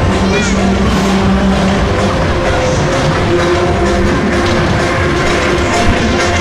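Loud fairground music mixed with crowd voices and the rumble of a spinning coaster ride running on its track.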